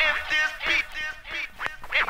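Turntable scratching in a hip-hop mix: a sample pulled back and forth in short strokes that bend up and down in pitch, about three a second, over a faint beat.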